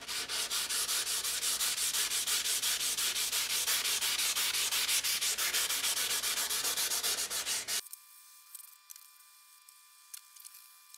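Sandpaper scrubbed rapidly back and forth over the wet steel blade of a 1940s Disston hand saw, a stroke every fraction of a second, taking off rust loosened by the rust-remover soak. The scrubbing stops abruptly about eight seconds in.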